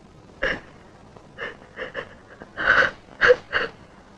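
A woman's short, breathy gasps in an irregular series of about seven, growing stronger in the second half, as she breaks down sobbing.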